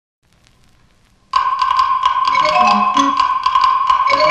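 Faint crackle of a 1950s 45 rpm record's surface, then, about a second and a half in, the instrumental introduction of the song starts suddenly: quick, regular taps over one held high note.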